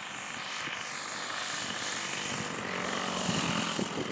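Radio-controlled Extra 330LT aerobatic model plane on its landing approach, engine throttled back for the glide. The propeller and engine sound grows gradually louder as the plane comes in low toward the field.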